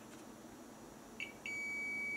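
Digital multimeter's continuity beeper: two brief chirps just over a second in, then a steady high beep as the test probes rest on the component's legs. It signals a short circuit across the part on the switch-mode power supply board.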